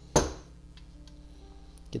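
One sharp knock from the plastic Coleco Adam Data Drive shell as it is turned over and knocked to shake loose a dropped washer. Under it is a faint steady low hum.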